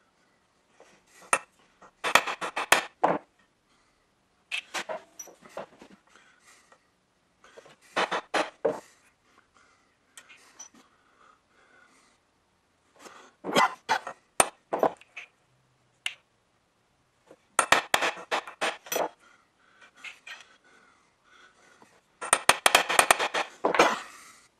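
Small metal hand tools clicking and scraping against a steel block, as a pointed punch and a small guide block are set on layout marks. The sound comes in six short bursts of rapid clicks, each about a second long, with pauses between.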